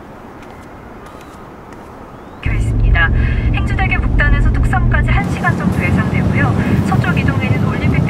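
Faint steady outdoor ambience, then about two and a half seconds in a loud car-cabin sound starts suddenly: a steady low engine and road hum with voices over it.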